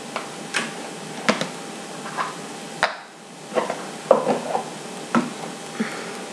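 Irregular light clicks and taps from a metal eyelash curler being handled, over a steady faint hiss, with the loudest little cluster just after the middle.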